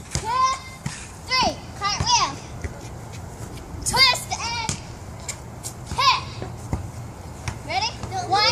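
Young girls' voices at play: short, high-pitched calls and squeals every second or two, with no clear words.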